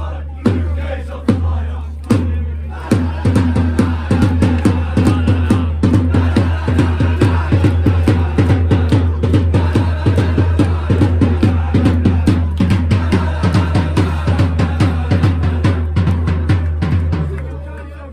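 A supporters' bass drum being beaten: a few slow single strikes, then a fast, steady run of beats from about three seconds in, with fans' voices over it. It fades out near the end.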